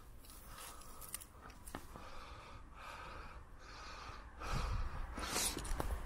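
Faint crunching and rustling of snow being brushed off the top of a wall by a gloved hand, with a few light clicks. Louder rustling and handling noise comes in about four and a half seconds in.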